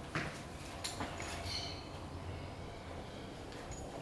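Faint handling noises: a few soft clicks and knocks as small objects are picked up and moved on a sofa, mostly in the first second, over a low steady room hum.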